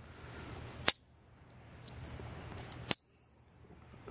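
Two sharp metallic clicks about two seconds apart: the blades and implements of a multi-blade slip-joint pocket knife snapping on their backsprings as they are worked. A faint steady insect chirr sits underneath.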